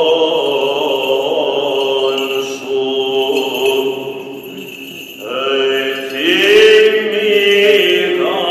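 Male voices singing Byzantine chant, long held melismatic notes. The line sinks quieter about halfway through, then a new phrase swells up in pitch about six seconds in.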